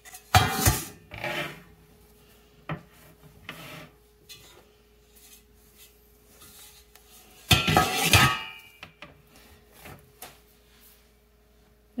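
Metal cake pans clattering and knocking against a wire cooling rack as baked round cakes are turned out of them, in two bouts of clatter, about half a second in and again past the middle, with a few light knocks between.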